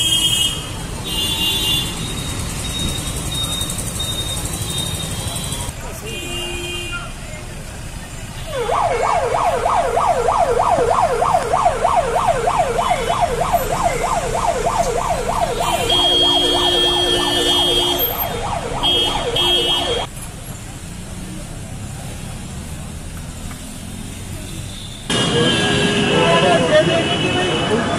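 A vehicle siren with a fast up-and-down yelp, about three to four sweeps a second, starts about nine seconds in and cuts off suddenly some eleven seconds later. Under it is road traffic noise with short beeps of car horns.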